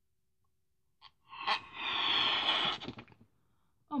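A person blowing hard into a thick latex balloon to inflate it: one long, noisy breath of air, starting about a second and a half in and lasting about two seconds.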